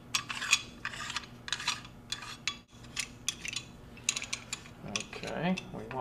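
Small metal parts being handled: a string of short clicks and scrapes as a coated drum plug is fitted into a metal holder plate and the cross-cut tester is picked up.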